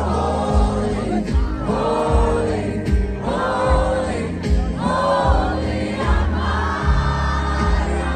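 Live country band playing on an outdoor festival stage, heard from inside the crowd. A singer's long sung lines run over the band and a steady bass, with the crowd audible in the mix.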